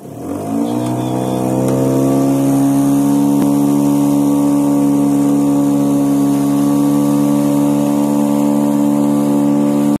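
Boat engine close by, rising in pitch and loudness over the first couple of seconds as it is throttled up, then running at a steady speed with the boat under way.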